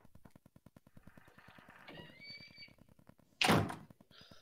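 Horror-film soundtrack effects: a faint fast rhythmic pulse, a brief high creak about two seconds in, then a loud short thud near the end.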